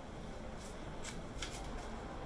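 Steady low wind rumble on the microphone, with a handful of short, sharp rustles or clicks close to the microphone in the second half, like fingers or clothing brushing the recording device. No ship's horn sounds.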